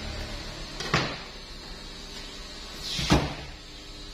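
Two knocks on the cutting table while a large tuna is handled, one about a second in and a louder one near the end that follows a short scrape.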